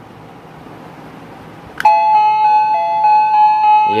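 A wireless door chime receiver (WDS) plays its electronic melody after its push-button remote is pressed. It starts with a click about two seconds in, then a string of bright electronic notes stepping up and down over one held note.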